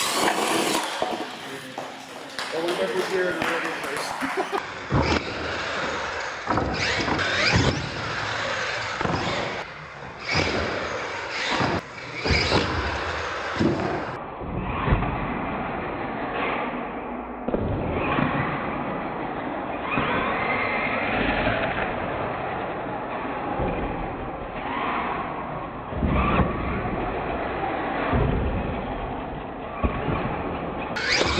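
Radio-controlled monster truck running on a concrete floor: its motor and tyres whine and scrub, with repeated sharp thumps and clatters as it lands jumps off ramps and tumbles. Voices are heard behind it.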